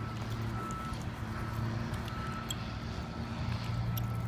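Two dogs play-wrestling on artificial turf: faint scattered taps and scuffles of paws and mouthing, over a steady low hum in the background.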